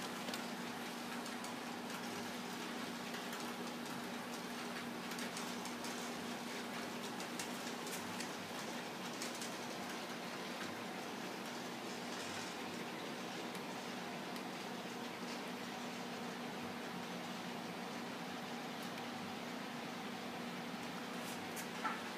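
Faint, steady whir of model trains running on a layout, over an even low hum with a few light ticks.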